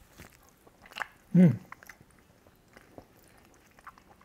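A man chewing a bite of smoked brisket: faint wet mouth clicks, then a short hummed "mm" of approval about a second and a half in.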